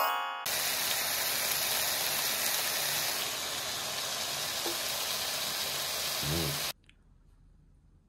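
A steady hissing noise that cuts off abruptly near the end, preceded by the tail of a rising pitched sweep in the first half-second.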